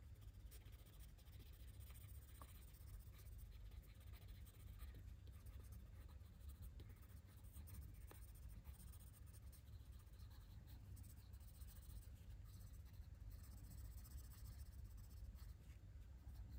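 Faint scratching of a coloured pencil on paper as it lightly shades in short, continuous strokes.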